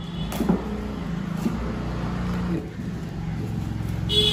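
Scissors cutting packing tape on a cardboard box: a few sharp snips and scrapes in the first second and a half, over a steady low drone.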